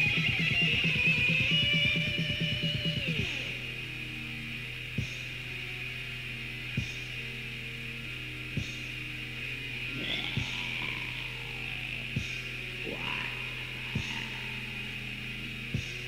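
Raw black metal from a 1992 cassette demo. The band plays fast and loud for about three seconds, then drops to a sparse passage: a steady low hum under tape hiss, a single sharp hit about every two seconds, and sliding tones coming in from about ten seconds.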